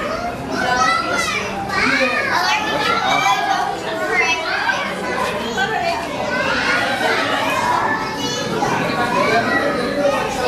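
Many children's voices talking and calling out over one another, a steady hubbub of high voices.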